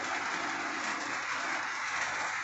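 Hot oil sizzling steadily in the bottom of a cooking pot.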